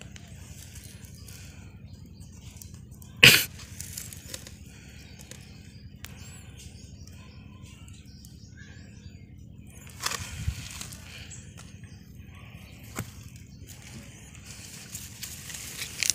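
Quiet garden ambience with a low steady hum and faint bird chirps, broken by a sharp knock about three seconds in and a softer knock and rustle about ten seconds in.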